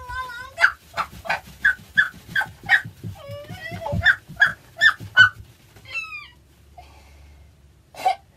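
A woman's high-pitched ticklish yelps while the sole of her foot is scrubbed: a fast run of short dog-like cries, about two a second, then a sliding cry about six seconds in before it quiets down.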